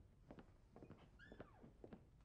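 Near silence, with faint light clicks of cutlery against a plate and one brief faint squeak a little past the middle.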